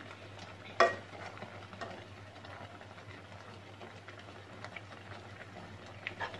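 White plastic spoon stirring bottle gourd halwa as it bubbles in milk in a nonstick pan, with soft scraping and small clicks, and one sharp clack against the pan about a second in.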